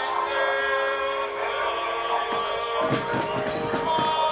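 A hymn from a broadcast Rosary, its music holding long sustained chords. A few short clicks come about two and a half to four seconds in.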